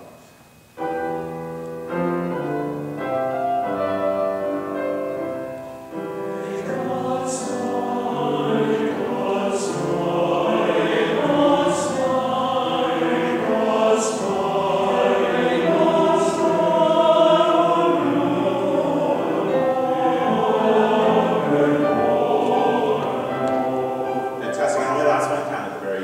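Men's choir singing with piano accompaniment. Piano chords open the passage, and the men's voices fill out about six seconds in, with clear hissing consonants recurring every couple of seconds.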